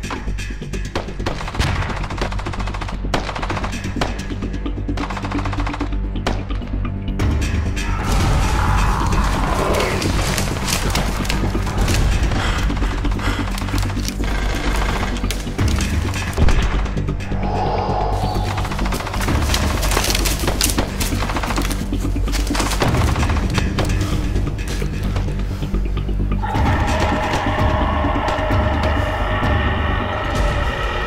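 Rapid automatic rifle fire, shot after shot in sustained bursts, over dramatic film-score music with a steady low drone.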